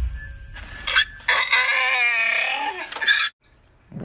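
A long, wavering animal cry used as a sound effect, starting under a second in and cutting off suddenly near the end. Before it, the low rumble of an intro boom fades away.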